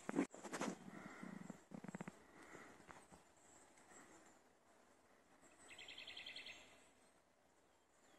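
Quiet forest ambience with faint high bird chirps. About six seconds in, a bird gives a short, rapid trill of evenly repeated high notes. A few brief rustles or knocks come in the first second.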